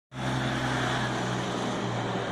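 The MWM diesel engine of a Ford F-12000 truck running under load as it drives past close by, a steady low drone that holds one pitch.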